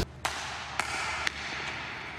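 Three sharp clicks about half a second apart over a steady low hiss.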